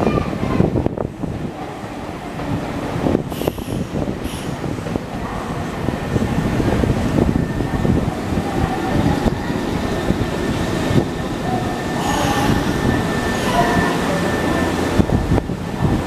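A Nankai Southern limited express electric train runs past the platform, a steady rumble of wheels on rails. Faint whining tones rise and waver near the end.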